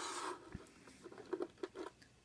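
A few faint, light clicks and taps from silver coins being handled on a table, coming in a loose cluster in the second half.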